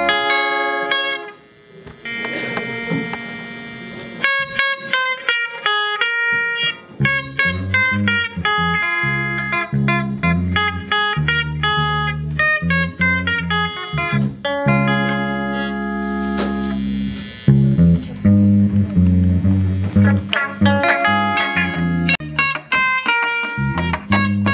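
Electric guitars played through an amplifier in an instrumental passage: a quick picked melody line over lower notes. The playing thins briefly about a second in and comes back fuller from about four seconds in.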